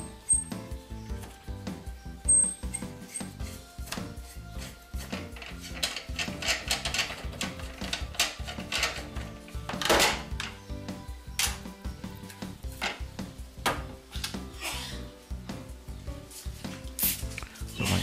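Soft background music under clicks and knocks as a spring-loaded cheese press is unwound by hand and the cloth-wrapped cheese is handled. A brief squirt of a spray bottle comes near the end.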